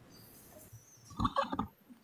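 Quiet room tone, then about a second in a brief low voiced sound from a person, like a murmur or throat-clearing, lasting about half a second.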